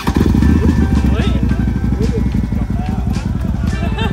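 Large cruiser motorcycle's engine comes in suddenly right at the start and runs loudly with a fast, low pulsing rumble, with faint voices over it.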